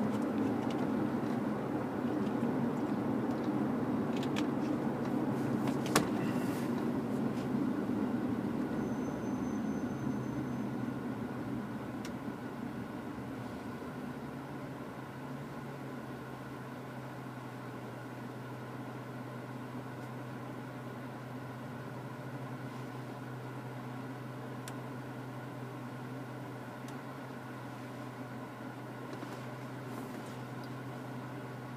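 A Dodge Magnum R/T's 5.7-litre Hemi V8 through a Flowmaster American Thunder exhaust, heard from inside the cabin. It runs under way for the first ten seconds or so, then falls quieter and settles into a steady low idle. A single sharp click comes about six seconds in.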